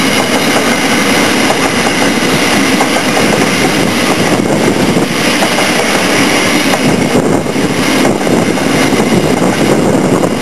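Freight train wagons rolling past close below, a steady loud rumble and clatter of steel wheels on the rails, with wind buffeting the microphone.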